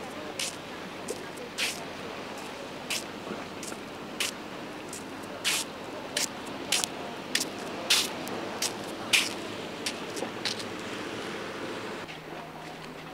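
Small waves slapping against a harbour wall: a steady wash of sea and wind, broken by about twenty short, sharp splashes at uneven intervals, coming thickest in the second half.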